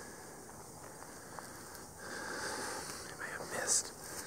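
Soft rustling and close breathing from a hunter walking slowly through brush, with a brief whisper near the end.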